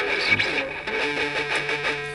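Electric guitar played with a pick: a low D, fretted at the fifth fret of the fifth string, struck repeatedly in a quick, even rhythm. It is the first chord of a song's verse.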